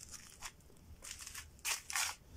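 A run of short, irregular crunching and rustling scrapes, several a second, loudest just before the end.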